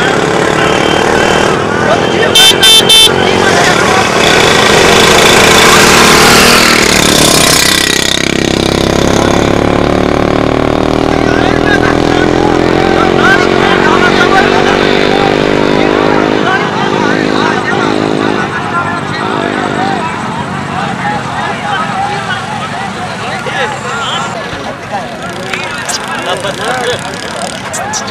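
Vehicle engines running and revving through a crowd of shouting voices, with three short horn-like toots close together early on. Later an engine climbs steadily in pitch for several seconds as it accelerates, then the sound thins to crowd voices.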